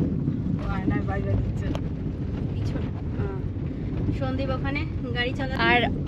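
Wind on the microphone: a steady low rumble, with faint voices talking in the background and louder speech near the end.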